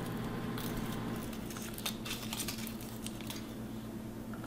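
Faint, sparse crinkling and light clicks of foil-wrapped chocolate kisses being unwrapped by hand, over a steady low hum.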